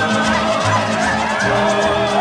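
Mariachi band music from the film soundtrack: wavering high trumpet lines over a steady bass pulse, about two notes a second.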